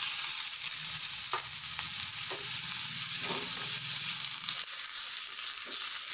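Cubes of watermelon rind frying in oil in a pan, a steady light sizzle, with a few soft knocks of the spatula as they are stirred. They are being sautéed to cook off their raw smell.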